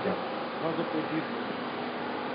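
A steady buzzing drone with faint voices in the background.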